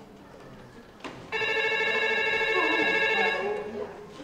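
A telephone ringing: one ring about two seconds long, starting a little over a second in.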